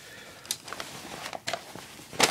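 Shirt fabric rustling and brushing right against the microphone as the shirt's last buttons are worked undone, with a few sharp ticks: one about a quarter of the way in, two more a little past halfway.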